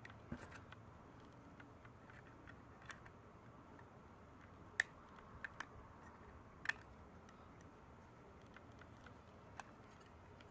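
Light clicks and taps of thin aluminum parts as a miniature folding twig stove's panels and slotted cross pieces are fitted together by hand: a few scattered clicks over a faint background, the sharpest about halfway through.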